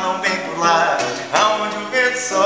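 A man singing a Brazilian pop song to a strummed nylon-string classical guitar.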